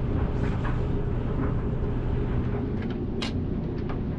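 Rustling and small clicks from a jacket being pulled on and outdoor shoes put on, with a sharp click a little past three seconds in, over a steady low mechanical hum in the room.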